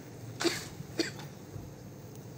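Two short coughs, about half a second apart.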